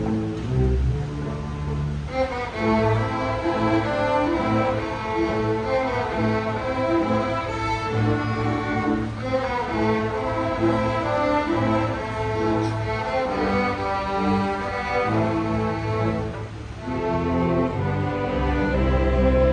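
Student string orchestra of violins and cellos playing together, bowed and sustained, with the higher string parts growing stronger about two seconds in and a brief lull near the end.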